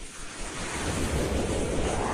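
A whooshing noise swell from an animated logo-intro sound effect, building steadily in loudness, with a sweep that starts rising in pitch about halfway through.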